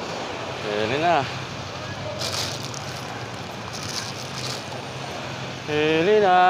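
Street traffic noise with a steady low hum and two short hissing passes in the middle, with a brief voice about a second in and another voice starting near the end.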